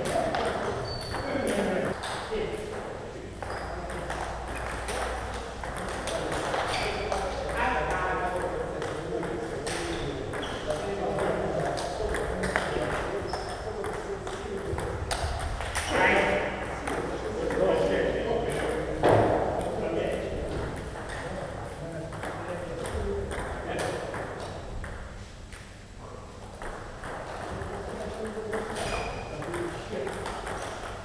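Table tennis ball being struck by rubber paddles and bouncing on the table in rallies: sharp, irregular clicks, with voices in the hall behind.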